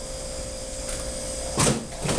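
A plastic bowl of frosting being handled on a metal worktop: one short scrape or knock about a second and a half in, over a faint steady hum.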